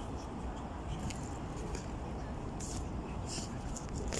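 Steady low outdoor background rumble with scattered light rustles and clicks close to the microphone, as fabric brushes the phone.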